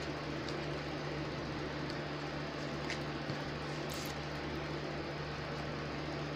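Steady low room hum with a constant low tone and an even hiss, and a few faint ticks.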